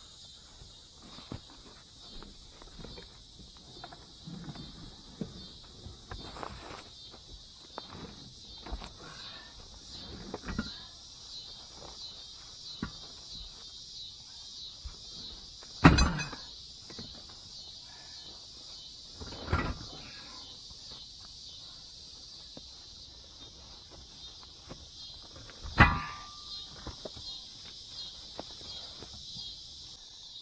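A steady, high insect chorus runs throughout, with scattered knocks, rustles and shuffling from things being moved about in a hatchback's cargo area. Three much louder thumps stand out: one about halfway, another a few seconds later, and a last one near the end.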